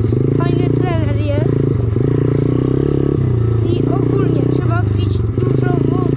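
Dirt bike engine running under way, its pitch stepping up and down every second or so as the throttle opens and closes, with a voice heard over it.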